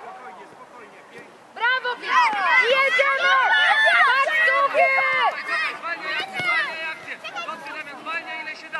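Many high-pitched children's voices shouting and cheering at once during a youth football match, loudest and densest from about one and a half to five and a half seconds in.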